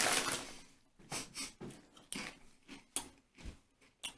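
Crinkly potato chip bag rustling as a hand rummages inside it, dying away after the first second, followed by a few scattered short crackles.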